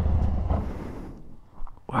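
Harley-Davidson Street Bob 114's Milwaukee-Eight V-twin running at low speed as the bike pulls off the road, its rumble fading away about a second in.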